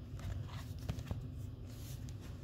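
Faint handling noise: a few soft clicks and rustles as a cardboard board book is closed and moved aside.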